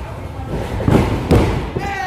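Wrestlers' bodies hitting the wrestling ring: two heavy thuds about half a second apart, ringing in the hall, over shouting voices.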